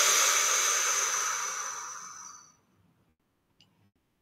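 A woman's long breath blown out slowly through pursed lips, a steady hiss that fades away and ends about two and a half seconds in.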